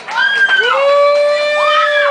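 Electric guitar sending out loud pitched tones that swoop up and down in arching glides, one long note held high in the middle, over a steady low drone. It cuts off just after the end.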